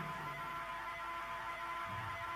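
Low, steady hum with a few faint held tones.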